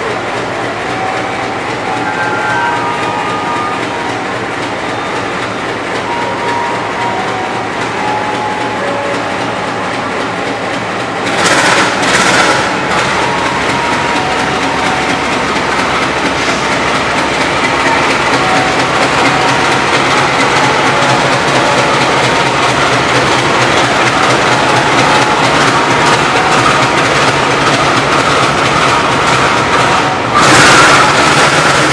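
GE U18C (CC 201) diesel-electric locomotive's engine running at idle. About eleven seconds in come two short loud blasts. After them the engine grows louder as the locomotive starts to pull out of the station.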